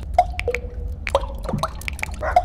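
Water drops falling one after another, each a short plink, several a second at uneven spacing, some leaving a brief ringing tone that bends upward in pitch, over a steady low hum.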